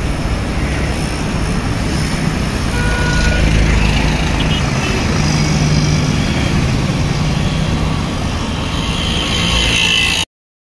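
Steady rush of wind and road traffic noise heard from a moving two-wheeler in city traffic, with a low engine hum from about five to eight seconds in and a brief high tone about three seconds in.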